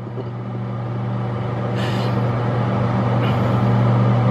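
Microwave oven running: a steady electrical hum and fan noise, growing slowly louder, while vinegar water boils inside an Angry Mama steam cleaner. A brief hiss comes about two seconds in.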